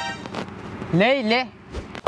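A man's voice saying a short phrase, 'le le', about a second in, after a brief pitched tone at the very start.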